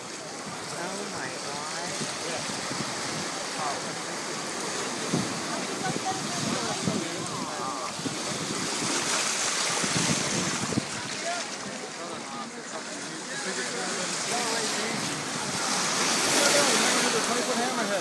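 Shallow surf washing and splashing, with many people's overlapping voices and wind on the microphone. The water noise swells twice, about halfway through and again near the end.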